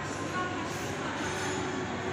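Steady wash of indoor shopping-mall background noise, with no distinct events.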